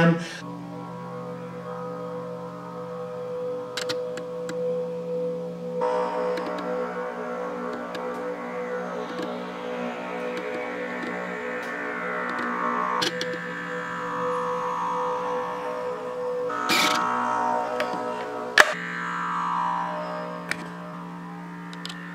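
Background music built on a low steady drone with slowly sweeping overtones. A sharp click stands out near the end.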